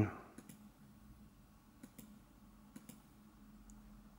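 Computer mouse clicking in three quick pairs over a faint steady low hum, as a video is sought back through on screen.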